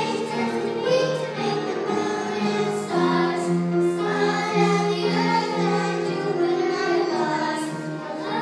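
Four young children singing a gospel song together into one microphone, in a steady run of held notes.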